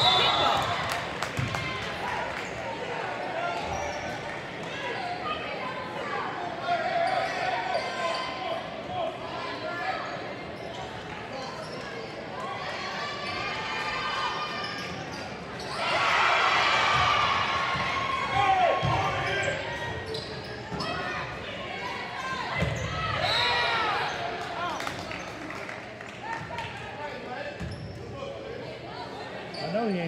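Spectators' voices and shouts in a gymnasium during a basketball game, with the thud of the ball being dribbled on the hardwood court. The crowd's shouting rises sharply about halfway through and stays loud for a couple of seconds.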